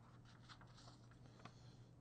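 Near silence: a faint rustle and a few light clicks of a sheet of paper being shifted, over a low steady hum.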